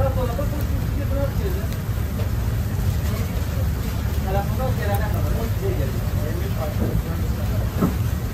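Indistinct voices talking over a loud, steady low rumble, with a sharp click near the end.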